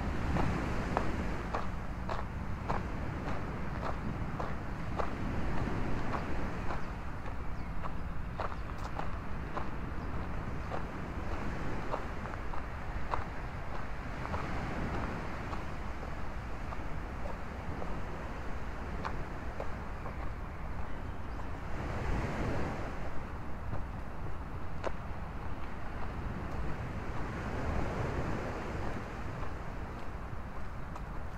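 Footsteps on a sandy dirt path, about two steps a second and clearest in the first half, over steady wind rumble on the microphone and a low wash of surf, with a stronger gust a little past two-thirds of the way in.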